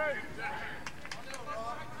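Players' voices calling out across a lacrosse field, faint and distant, with a few sharp clicks in the middle.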